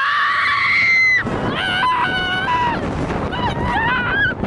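Riders screaming on a moving roller coaster: one long high scream through the first second, then shorter shrieks that rise and fall, over the steady rushing noise of the ride.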